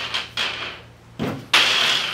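A microfiber cloth rubbing over a quilted leather purse in several hissy wiping strokes, working a leather ceramic coating into the surface, with a soft knock of the bag being handled a little past a second in.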